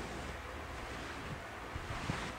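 Hands rubbing and sweeping across a fabric tarot cloth, a steady soft swishing.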